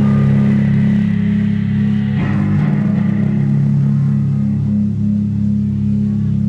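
Live rock band through amplifiers: electric guitar and bass holding low, ringing notes, with the cymbal wash falling away about a second in.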